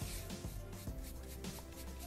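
Soft background music of steady held notes, with faint scratching of a dry-brush paint brush scrubbed over a wooden board.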